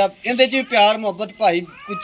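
A man talking, in a pitched and expressive delivery with drawn-out, sliding vowels.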